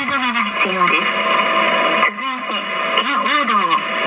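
Highway advisory radio traffic bulletin: a voice reading road information over a steady radio hiss and hum. About a second in, one announcement ends, and after a short pause the next one begins.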